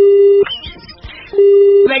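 Two short electronic beeps of one steady low pitch, each about half a second long: one right at the start and the second about a second and a half later.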